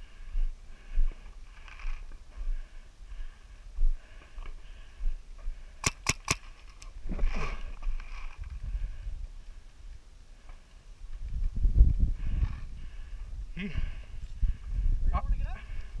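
Three quick, sharp paintball marker shots about six seconds in, over faint distant voices across the field. A low rumble on the microphone follows a few seconds before the end.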